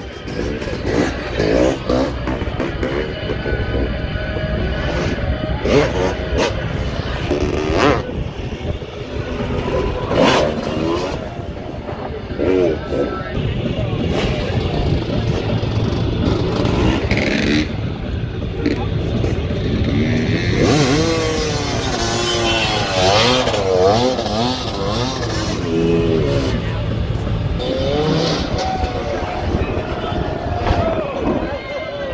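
Dirt bike engines revving up and down repeatedly in quick blips, with a voice and music in the background.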